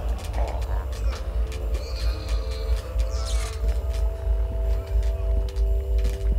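Horror film sound design: a deep continuous rumble, with several sustained held tones entering about a second and a half in. Scattered short clicks and a few breathy rushes sit over it.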